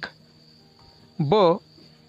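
A single spoken syllable, the option letter "ba", about a second in, over a steady high-pitched whine with faint pulsing above it that runs on behind the voice.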